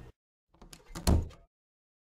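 A door being shut, with a few quick knocks and a solid thud about a second in.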